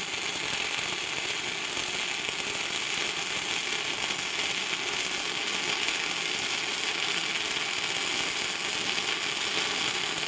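Steady crackling of a stick-welding arc: an eighth-inch E6010 electrode burning at 85 amps DCEP, powered by an Everlast PowerArc 200ST inverter welder, laying a fillet weld. The arc runs forceful and digs in hard.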